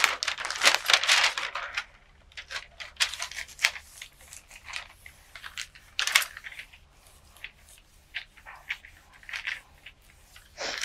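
Sheets of paper being handled and rustled, then hands pressing and rubbing a sheet flat over a gel printing plate. The rustling comes in short, irregular bursts, heaviest in the first two seconds, with a sharp crackle about six seconds in.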